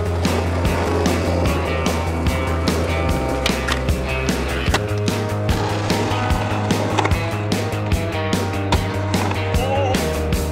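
A music track with steady bass notes and a beat, with skateboard sounds on concrete mixed in: wheels rolling and sharp clacks of the board.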